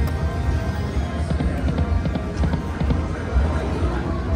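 Video slot machine spinning its reels: game music with a run of small clicks and knocks over a steady low casino rumble.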